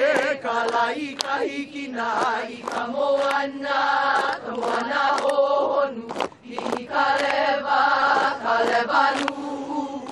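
A group of women chanting a Hawaiian hula chant (oli) together, in long held notes with a few brief breaks.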